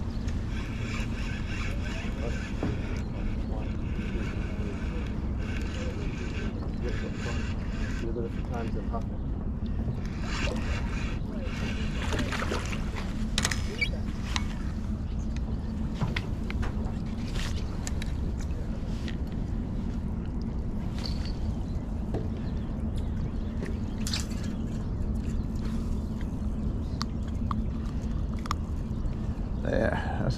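Spinning reel being cranked as a hooked fish is reeled in, over a steady rumble of wind on the microphone, followed by scattered sharp clicks and taps as the fish is swung up and handled.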